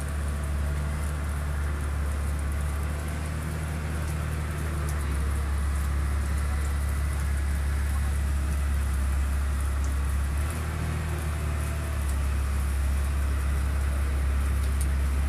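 Sleet, a mix of snow and rain, falling steadily: an even hiss with a few faint ticks of drops, over a constant low rumble.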